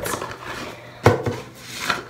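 Lid of a cardboard gift box lifted off with a light scraping rustle, then one sharp knock about a second in, with a smaller one just after.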